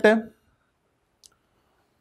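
A man's spoken word trails off, then a pause with a single short, faint click a little past the middle.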